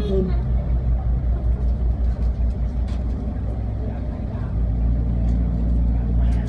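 SuperDong high-speed passenger ferry's engines running under way, heard as a loud low rumble from the open deck. It throbs unevenly at first and settles into a steadier drone about four and a half seconds in.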